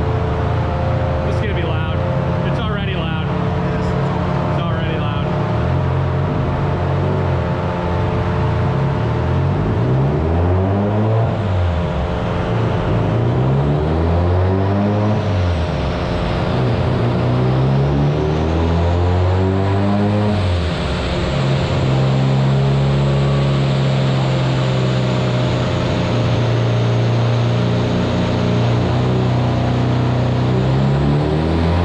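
Mazda RX-7 FC's rotary engine running on a chassis dyno: it revs up and drops back three times, then holds a steady high rev through the last third. The engine is loud.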